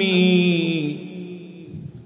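A male preacher's voice chanting one long held note into a microphone. The note slides slightly downward and fades away over the second half.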